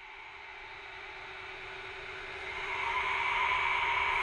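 Quiet electronic intro of a dance track: a hissing synth swell with a held tone underneath, growing steadily louder toward the next beat.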